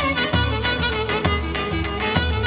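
Live Pontic Greek dance music: a clarinet plays an ornamented melody over keyboard accompaniment and a steady daouli drum beat.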